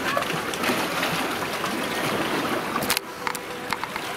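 Steady rushing noise of sea waves and wind. It breaks off suddenly about three seconds in, followed by a few sharp clicks.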